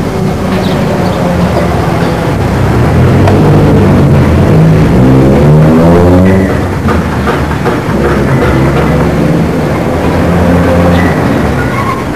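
A motor vehicle engine running, its pitch rising steadily about four to six seconds in and then dropping back.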